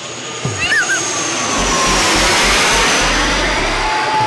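Twin-engine jet airliner passing low overhead on landing approach, gear down. Its engine roar swells to its loudest midway, with a high whine slowly falling in pitch.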